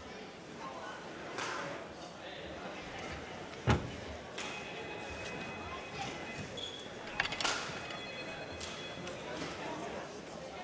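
Ambience of an indoor badminton arena between rallies: indistinct voices echo in the large hall. A single loud thud comes a little under four seconds in, and a quick cluster of sharp knocks follows around seven seconds.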